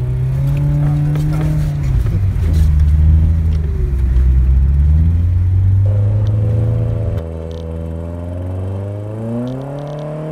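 Nissan 240SX engine revving hard as the car accelerates through snow, its pitch rising and falling with the throttle. About seven seconds in the sound drops sharply in level and changes, then the engine revs up again near the end.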